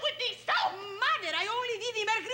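A woman speaking rapidly in an excited, high voice, her pitch swooping up and down.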